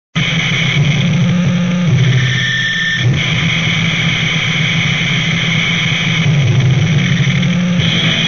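Lo-fi noisecore recording: a dense, loud wall of distorted noise that starts abruptly at the opening and runs on without a break.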